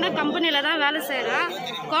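Speech: a woman talking in Tamil, with a crowd chattering behind her.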